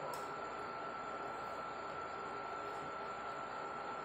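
Steady hiss with a thin constant whine, and a few light clinks of a metal spoon and fork against a ceramic plate as food is cut, the first just after the start.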